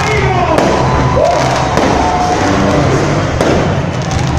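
Fireworks going off, with a few sharp pops at irregular moments over a steady loud din of music and voices.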